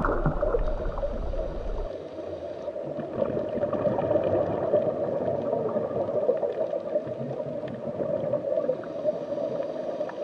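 Steady underwater ambience of moving water, a muffled noise with no distinct events; its deep low rumble drops away about two seconds in.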